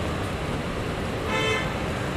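A short vehicle horn toot, about a third of a second long, a little past halfway, over steady background noise.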